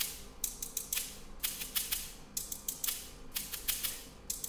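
Sampled shakers played on their own in a quick, uneven rhythm of short, bright, hissy shakes. This is the top layer of an epic orchestral drum arrangement, there to give the drums definition so they cut through.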